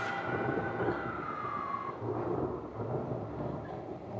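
Thunder rumbling with rain, a storm sound effect from an animated film's soundtrack, heard through a TV's speakers in a room. A tone glides slowly down during the first two seconds.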